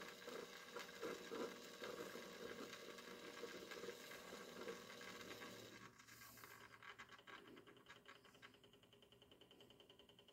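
Near silence: room tone, with faint soft patters and rustles through the first half that die away about six seconds in.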